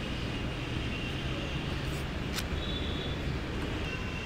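Steady low rumble of distant city traffic, with a couple of light clicks from cardboard and paper packaging being handled about halfway through.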